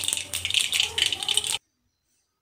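Mustard seeds spluttering in hot oil in a kadhai during tempering: a dense, rapid crackle of small pops that cuts off suddenly about a second and a half in.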